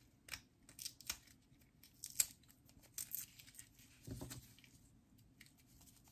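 Dry outer sheaths being peeled and torn off the root end of lemongrass stalks by hand: faint, irregular crisp crackles and tearing sounds, with a soft thump about four seconds in.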